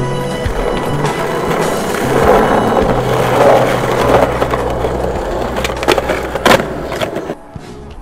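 Skateboard wheels rolling over rough concrete, louder around two to four seconds in, then a few sharp clacks of the board near the end, with music underneath.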